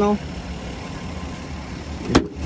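A car engine idling steadily, heard as a low hum.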